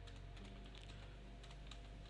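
Faint computer-keyboard typing: a handful of irregular keystrokes over a steady low hum.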